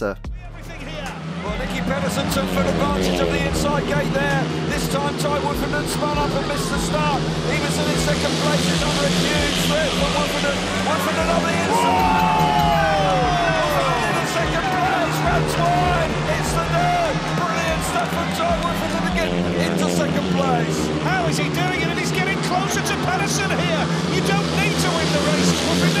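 Speedway motorcycles' single-cylinder engines racing together, their pitch rising and falling through the turns, with one long falling sweep about twelve seconds in.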